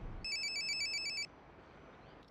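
Mobile phone ringing with a rapidly warbling electronic ringtone. It cuts off a little over a second in.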